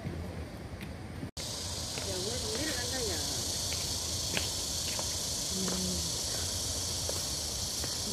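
Steady high-pitched insect drone, typical of a cicada chorus in summer trees, coming in strongly after a brief dropout about a second in.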